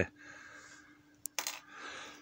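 Small handling noises on a workbench, with a black plastic part being picked up: a sharp little click about a second in, then a brief clatter and rustle, over a faint steady hum.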